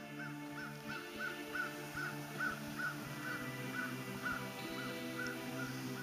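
Background music of sustained tones, over a bird calling in a quick, even run of short chirps, about four a second.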